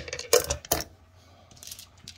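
Tumbled stones and ceramic tumbling media clinking against each other as they are handled: three sharp clacks in the first second, then a lighter clatter near the end.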